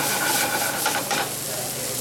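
Sculpin fillets, carrots and garlic sizzling in hot oil in a sauté pan on a gas burner, with a few short clicks about a second in.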